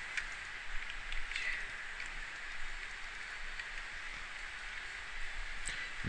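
Steady hiss of a recording's background noise, with a few faint clicks scattered through it.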